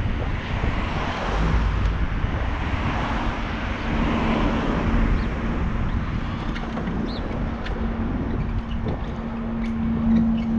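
Steady wind and rolling road noise from a bicycle ride on pavement, a rushing hiss over a low rumble. A steady low hum joins about four seconds in and grows stronger near the end.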